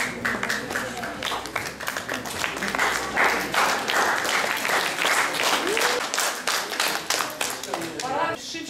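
Audience applauding, many hands clapping at once, growing fuller a few seconds in and thinning near the end, with a few voices among it.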